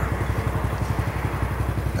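An engine idling steadily, a low running sound with fast, even pulses.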